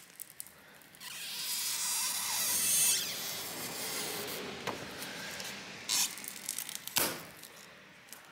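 A stretch-release adhesive pull tab being drawn out from under a laptop display panel: a rough, high hiss that builds for about two seconds and then fades. A few sharp clicks come near the end.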